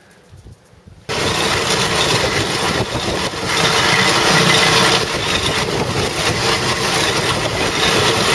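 Ochiai SR-X fertilizer spreader running: its engine and the rotating mechanism in the hopper that grinds manure into powder make a loud, steady mechanical noise. The noise starts abruptly about a second in.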